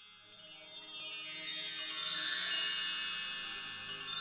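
Shimmering chime sound effect: many high, bell-like ringing tones swell in just after a brief hush and cascade on, over a faint low sustained tone.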